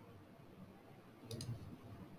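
Computer mouse clicked twice in quick succession, a faint double-click about a second and a half in, over quiet room tone.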